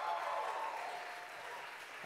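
Audience applauding and cheering in response to the host's call, dying down toward the end.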